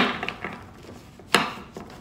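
A deck of tarot cards being shuffled by hand, with a sharp slap of cards at the start and another a little past halfway, and quieter rustling of the cards between.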